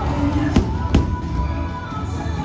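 Fireworks-show music playing through outdoor loudspeakers, with two sharp firework bangs less than half a second apart about halfway through.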